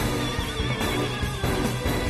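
Theme music for a TV drama's opening credits, with a pulsing low beat and a wavering high tone in the first second.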